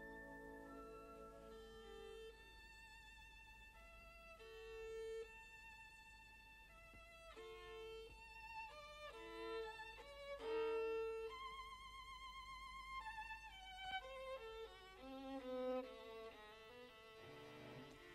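Solo violin playing a singing melodic line with vibrato, its long held notes giving way about halfway through to quicker runs of notes.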